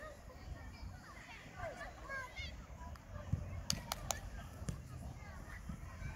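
Distant voices of children and adults calling out across a youth football pitch, over a low steady rumble, with a few sharp clicks around the middle.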